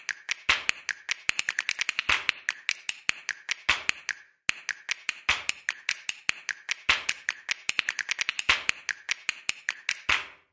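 A fast, irregular run of sharp clicks and taps, a sound effect for an animated title, with a short break about four and a half seconds in.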